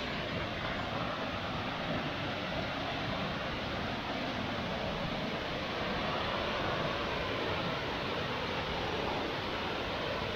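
Waterfall rushing in a steady roar of falling water, swelling a little about halfway through as the falls come nearer.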